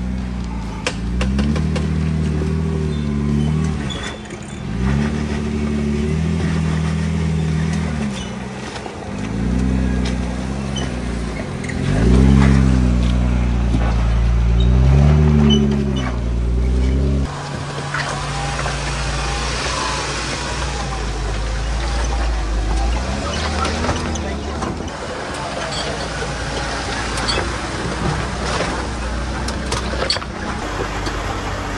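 Two-door Jeep Wrangler's engine revving in repeated throttle bursts, each rising and falling over a couple of seconds, as it crawls over rocks. About seventeen seconds in it settles into a steadier, lower run.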